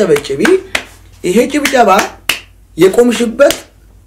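A man speaking in short phrases separated by brief pauses.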